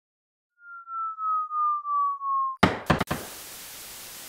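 Intro sound effects: a single tone pulsing about three times a second while sliding slowly down in pitch, then cut off by a few sharp clicks and a steady hiss of TV static.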